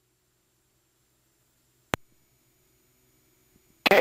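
Near silence on an aircraft intercom feed: only a faint low hum, broken by one sharp click about two seconds in.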